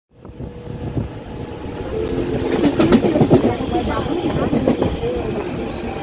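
Medha-electrics EMU local train running, heard from inside the coach: a steady rumble and a steady motor tone, with a run of sharp wheel clicks over rail joints about three seconds in. Voices are heard over the train noise.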